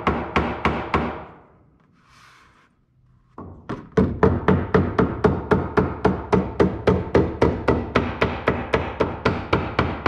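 Ball-peen hammer tapping rapidly on poster board held over the Corvair's sheet-metal floor structure, marking the metal's edge into the board for a template. A quick run of taps, a pause of about two seconds, then a steady run of about four taps a second.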